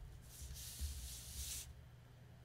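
Hands sliding over a sheet of patterned paper on a cutting mat: a soft, papery rub that lasts about a second.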